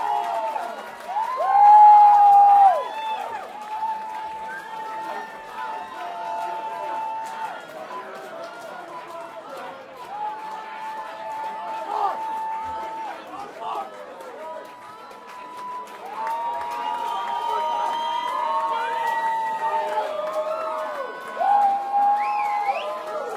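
Club concert crowd shouting, whooping and singing, with long held notes at one pitch. It is loudest about two seconds in.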